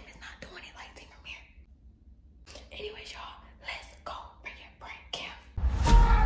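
A person whispering close to the microphone in a dark room, with a short pause about two seconds in. Near the end, eerie music starts abruptly and is much louder.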